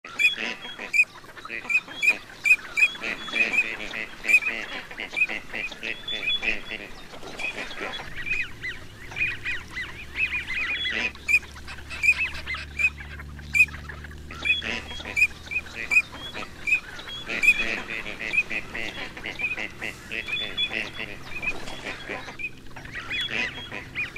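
A flock of gadwall ducks calling: rapid runs of short, overlapping calls, many per second, with a few brief lulls.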